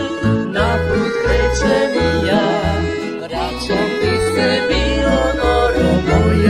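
Folk tamburica band playing: plucked tamburicas and accordion carrying the tune, with violin and a double bass plucking a steady pulse of low notes.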